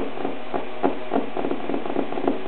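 Alaskan Malamute puppies scuffling and chewing in play: short irregular scrapes and clicks, several a second, over a steady low hiss.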